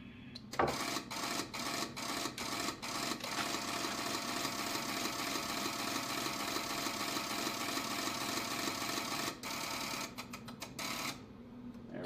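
The Icom IC-7300's built-in automatic antenna tuner runs a tuning cycle, its relays clicking rapidly as it tries to bring down a 1.8:1 SWR. It starts with separate clicks about half a second in, turns into a fast, even clatter, and stops suddenly near the end after a last few clicks.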